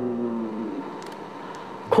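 Quiet background acoustic guitar music: a held chord fading away over a low hiss. A man's voice begins right at the end.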